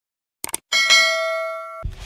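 Subscribe-button sound effect: a quick double mouse click, then a bright notification-bell ding that rings for about a second and cuts off abruptly.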